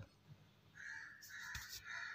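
A bird calling faintly in the background: about three short calls, starting about a second in.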